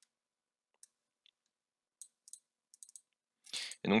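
A handful of faint, separate clicks from a computer mouse and keyboard, with near silence between them.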